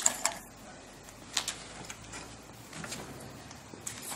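A few sharp clicks and clacks of metal parts as a bicycle trailer's wheel is taken off: a quick pair at the start, another about a second and a half in, then fainter ticks.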